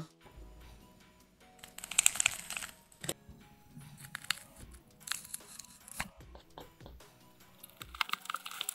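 AI-generated squishing sound effect made by MMAudio from the prompt "squishing a toy": irregular bursts of crinkling and crunching, loudest about two seconds in, over faint steady tones. The result is not convincing yet, and its maker thinks the prompt needs to be better.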